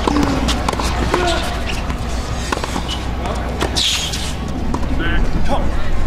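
Tennis ball struck by rackets during a rally on a hard court: a series of sharp hits spaced about a second apart, with a brief hiss about four seconds in and faint voices in the background.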